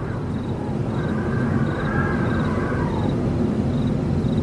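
Eerie night ambience: a steady low rumble with faint wavering high tones over it, and crickets chirping about twice a second.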